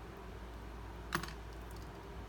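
A single sharp click about a second in, followed by a few faint ticks, from hands handling a steel fishing hook rigged with rubber bands on a baitfish. A low steady hum runs underneath.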